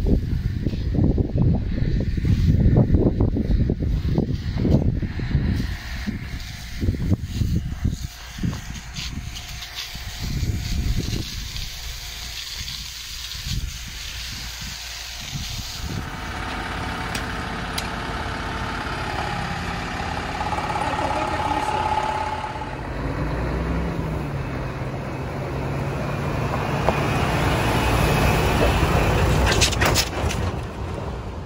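Wind buffeting the microphone in irregular gusts. About halfway through this gives way to a fire engine running steadily with a low hum.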